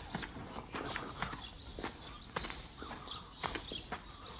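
Footsteps of several people walking on a hard, stony courtyard floor, an irregular run of sharp steps a few per second.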